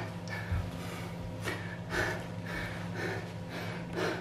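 A man breathing hard after a full-body workout: several short, audible breaths, about two a second in the second half, over a faint steady low hum.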